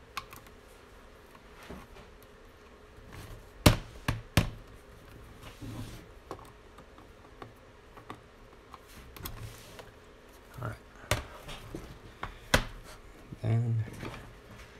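Small screwdriver working screws out of a laptop's plastic bottom case: faint scraping broken by scattered sharp clicks and taps of tool and plastic. There are three close together a few seconds in and two more near the end.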